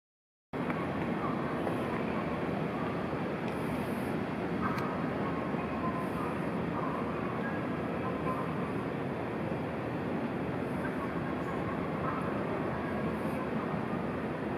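Steady background noise of a large railway station building, a continuous even hum with faint distant voices, starting suddenly about half a second in.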